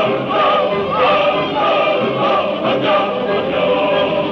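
Operatic singing with orchestra in a 1950s recording: sustained sung notes with a wide vibrato over a full orchestral accompaniment.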